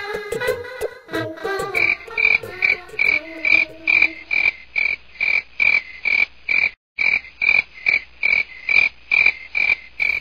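Frogs croaking in a steady rhythm, about three croaks a second, as a night-time ambience effect. The sound cuts out briefly about seven seconds in.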